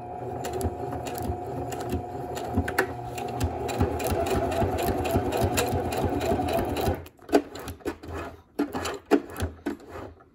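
Electric sewing machine running steadily, stitching hook-and-loop tape onto vinyl, then stopping about seven seconds in. A few short clicks and knocks follow.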